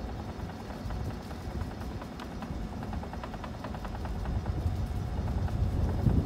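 Low, steady rumble of wind on the microphone, with scattered light clicks and rattles.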